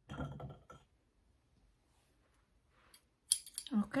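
A pair of metal scissors being handled, giving a few light clicks near the end, after a short snatch of a woman's voice and a stretch of near silence.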